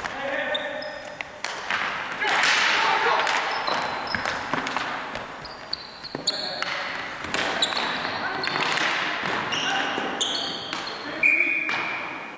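Ball hockey played on a gym's hardwood floor: repeated sharp clacks of sticks hitting the ball and floor, sneakers squeaking, and players shouting, all echoing in the hall. A brief shrill tone sounds near the end.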